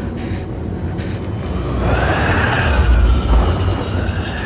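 A sound-designed horror-film creature's cry: a drawn-out call, rising then falling in pitch, swells in about halfway through over a deep rumble that grows loudest near the end.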